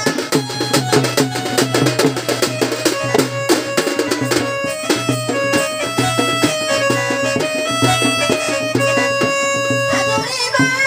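Instrumental Odia folk-dance music: fast, dense drumming under a melody instrument that plays long held notes, with no singing.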